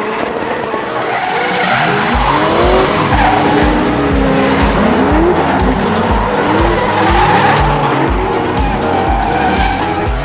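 Drift cars' engines revving, their pitch sweeping up and falling back again and again, with tyre squeal. Under it runs background music with a steady bass beat of about two a second. The whole grows louder over the first couple of seconds.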